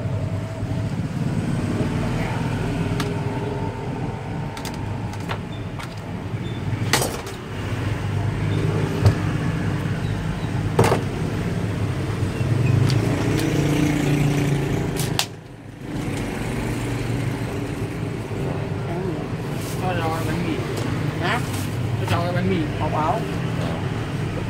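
Busy street ambience: a steady rumble of road traffic with faint chatter of people in the background and a few sharp clicks.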